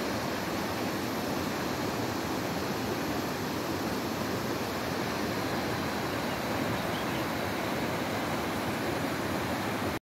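Steady, unbroken rush of water from a rocky mountain stream and waterfall.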